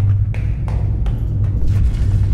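Hurried footsteps on stairs, several sharp steps a few tenths of a second apart, over a loud, steady low drone.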